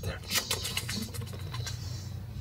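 Low, steady hum of room noise, with a few soft rustles or clicks about half a second in.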